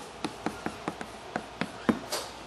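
Chalk tapping and clicking against a blackboard while writing: an uneven run of about nine short sharp taps, roughly four a second, the last one the loudest.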